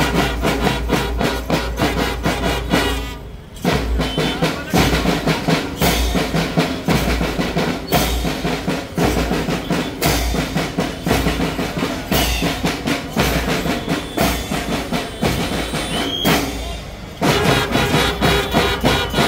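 Marching drum band playing a fast, steady beat on snare drums, bass drum and clashing hand cymbals. It drops away briefly twice, about three seconds in and again near the end.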